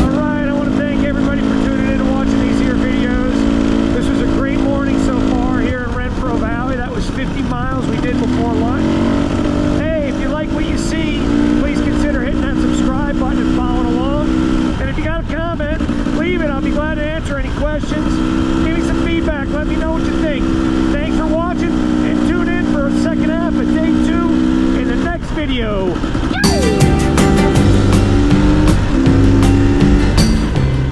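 Onboard sound of a dirt bike engine running steadily at riding speed. Its note dips and rises again several times and falls away about 25 seconds in. Music comes in near the end.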